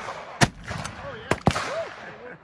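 A single loud shot from an 1875 Westley Richards cape gun about half a second in. Two more sharp gunshots from other guns on the range follow about a second later.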